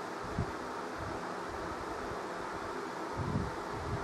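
Steady low hiss of background room noise, with a faint low thump shortly after the start and a soft low rumble about three seconds in.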